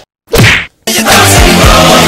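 A single swishing punch sound effect about a third of a second in, then loud background music with a steady low beat that cuts in suddenly just before a second in.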